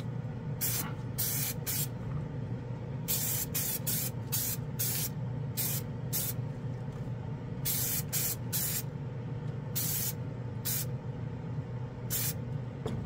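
Aerosol spray can of KBS Diamond Clear gloss clear coat hissing in a string of short bursts, each under half a second, with brief uneven gaps, as a model car body is coated. A steady low hum from the spray booth's exhaust fan runs underneath.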